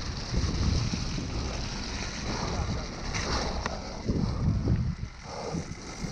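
Mountain bike descending a dirt forest trail at speed: wind rushing over the microphone and tyres rumbling over dirt and leaves, with occasional clicks and rattles from the bike over bumps.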